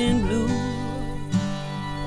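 Acoustic guitar strummed steadily with a fiddle bowing a melody over it, in a country-style duet; a hard strum stands out a little over a second in.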